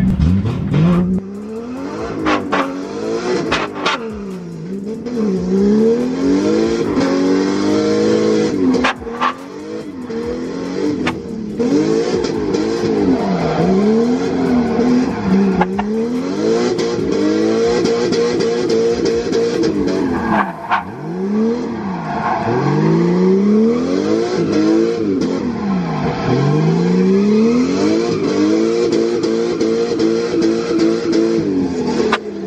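Drift car's engine revving up and down again and again during a drift run, its pitch climbing and dropping many times, heard from inside the roll-caged cabin.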